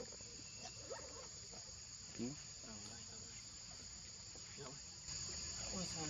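A steady, high-pitched chorus of insects shrilling without a break, growing louder about five seconds in.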